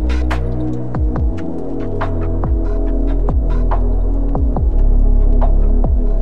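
Future garage electronic music: a deep, sustained sub-bass and held synth pad chords under an uneven beat of kick drums that drop in pitch, with crisp snare and hi-hat hits.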